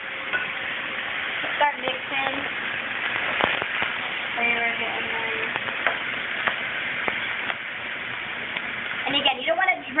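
Vegetables and tofu sizzling in oil in a stainless steel skillet over a gas flame, stirred with a spatula that clicks and scrapes against the pan now and then.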